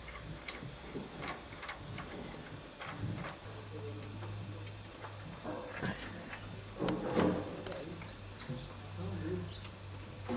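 Faint metallic clicks and taps of bolts and a steel lever being handled and fitted by hand on the engine's layshaft, with a low steady hum joining about a third of the way in.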